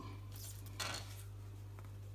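Brief handling noise of objects moved on a hard stone worktop, loudest just under a second in, over a steady low hum.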